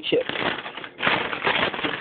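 Plastic bag of kettle-cooked potato chips crinkling and rustling as it is handled, a crackly rustle that grows louder about halfway through.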